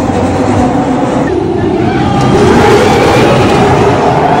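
Roller coaster train of mine-cart-style cars rolling on its track out of the station, a steady rolling rumble, with riders' and bystanders' voices mixed in.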